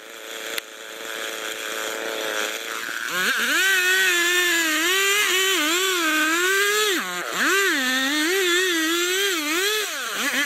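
Large Stihl chainsaw idling in the felling cut, with a single sharp knock from a hammer blow under a second in; about three seconds in it is throttled up to full speed and saws through the trunk, its pitch wavering as the chain loads and unloads, with a brief dip past the middle.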